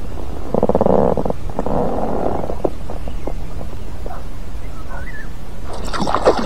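Low, gurgling water rumble close to the float tube, louder in two rough stretches in the first half, with a few faint clicks. Just before the end, sharp splashing starts as a pike thrashes at the surface on the line.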